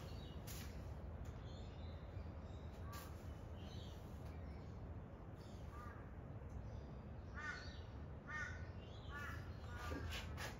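Crows cawing in the background, a handful of short calls that come closer together in the second half, over a steady low rumble.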